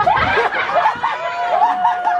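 People laughing and chuckling at a party, in short rising-and-falling bursts, with a high steady tone held through the second half.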